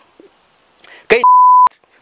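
A censor bleep: one steady, high, pure beep about half a second long, starting a little past midway and cutting off sharply, right after a short spoken word.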